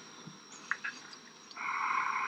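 Two faint clicks of the resuscitation equipment being handled, then a steady hiss about one and a half seconds in. The hiss is gas flowing out of a T-piece resuscitator's mask circuit, with the flow meter set to 8 litres a minute.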